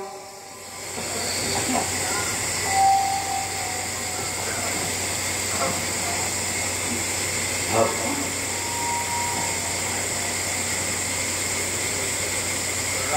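Steady electrical hiss with a low mains hum and a thin high whine from a live public-address system, with faint scattered voices now and then.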